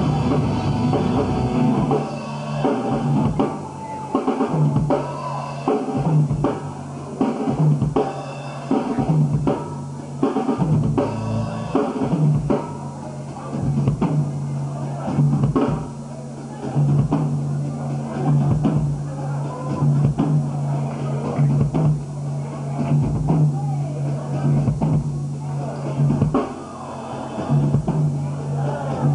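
A punk/hardcore band playing live: a drum kit with bass drum and snare drives the beat under distorted electric guitars. The loudness swells and dips in a regular pulse.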